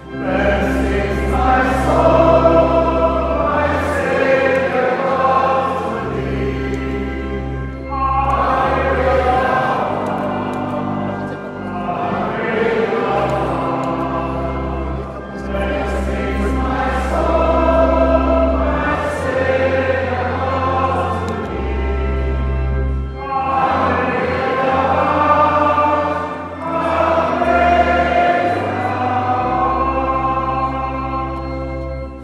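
Choir singing slow, sustained choral music over long held low bass notes, in phrases a few seconds long with brief breaths between them.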